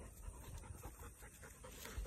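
A retriever dog panting, faint and steady.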